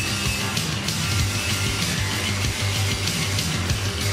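Loud, distorted electric-guitar punk rock music with a steady, pounding beat.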